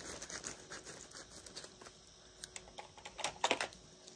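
Soft rustling and light clicks of packaging being handled, with a quick run of clicks about three and a half seconds in.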